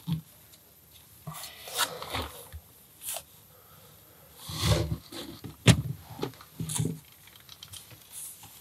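LEGO plastic bricks being handled and snapped together: scattered light clicks with brief rustling and scraping of pieces, and one sharper click about two-thirds of the way in.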